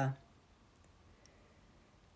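The last word of a spoken prayer trails off, then a pause of near silence with faint room tone and two faint clicks about a second in.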